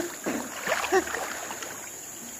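River water sloshing and lapping around two men wading chest-deep as they stretch out a fishing net, busier in the first second and then settling to a steady low wash.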